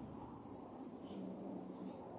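Faint rustling and small handling sounds from communion vessels and linens being moved on the altar, with a faint low hum in the middle.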